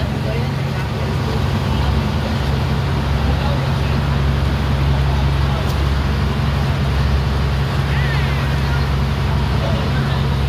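Outrigger boat's engine running steadily under way, a constant low hum, with wind and water rushing past.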